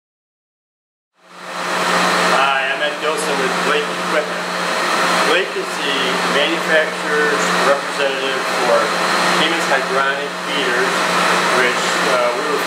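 Air handler running: a loud, steady rush of air with a constant low hum, cutting in suddenly about a second in.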